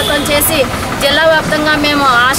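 A woman speaking at close range into microphones, over steady low background noise.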